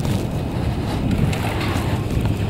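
Steady low rumble of wind buffeting the microphone on a moving chairlift, with a few faint clicks.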